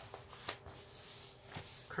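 Hands rubbing and smoothing the plastic protective film on a curled diamond-painting canvas: a soft, low rustle of skin sliding over plastic, with a brief tap about half a second in.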